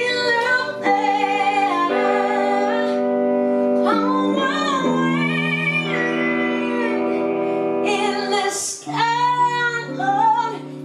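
A woman singing lead in a live band performance, her voice rising and falling in phrases over guitar that holds sustained chords beneath her.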